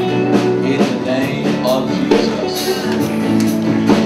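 Worship band music with guitar, held chords and a steady drum beat.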